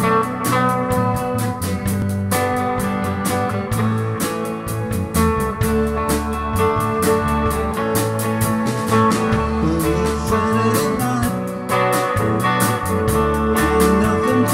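Live four-piece band of electric lead guitar, electric rhythm guitar, bass guitar and drum kit playing an instrumental passage, with a steady drum beat under sustained guitar notes.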